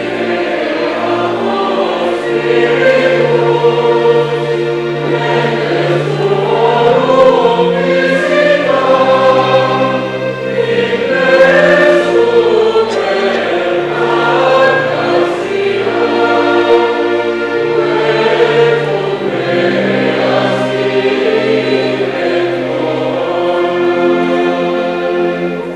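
Choir singing a slow sacred hymn over long held low accompanying notes.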